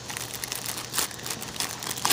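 Clear plastic pouch crinkling as it is handled and turned in the hands, an irregular run of small crackles.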